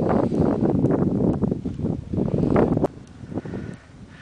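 Wind buffeting the microphone of a camera carried by a moving skier: a loud, low, gusty rumble that drops away suddenly about three seconds in.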